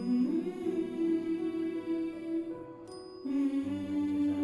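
Background drama score: a slow, wordless hummed vocal melody over sustained notes, moving to a new held note about three seconds in.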